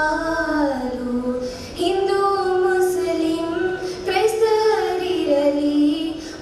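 Young girls singing a song together into microphones, with long held notes that slide from one pitch to the next.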